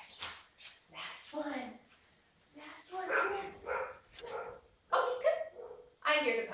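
A dog giving a few short barks and vocal sounds, with speech-like sounds in between.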